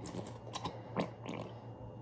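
Plastic squeeze bottle of honey mustard squeezed upside down over a glass bowl, giving a few faint soft clicks and squelches as the thick sauce comes out.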